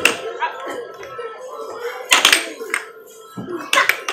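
Air hockey puck knocking against the mallets and table rails in a few sharp clacks: one at the start, a quick cluster about two seconds in and another near the end, over arcade game music and chatter.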